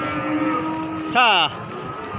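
Background din of a busy livestock market with voices, cut just past a second in by a loud, brief cry that slides down in pitch.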